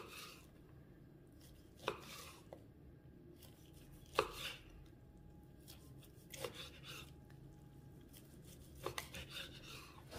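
Kitchen knife slicing through roasted turkey breast, the blade knocking on a bamboo cutting board at the end of each cut: about six short, sharp knocks, roughly two seconds apart.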